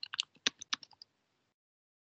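Computer keyboard keys typed in a quick run of about ten keystrokes over the first second, entering a password, then stopping.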